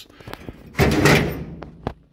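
A loud thump with a short rattle starting about a second in and fading away, then one sharp click near the end: a part being handled on the bare floor of an old truck's cab.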